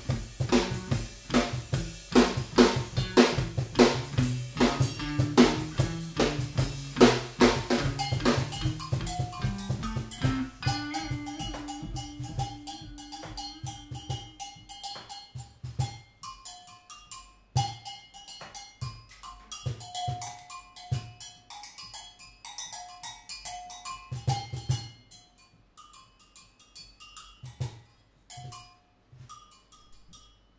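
Live drum kit and electric guitar playing an instrumental passage: a dense, steady drum groove over a moving low line for about the first ten seconds, then sparser drum hits with short single notes, thinning out and quieter toward the end.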